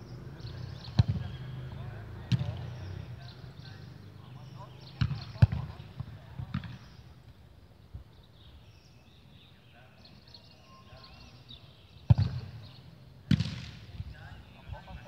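A football being struck: about seven sharp thuds spread irregularly, the loudest about five seconds in and again near twelve seconds, with faint voices underneath.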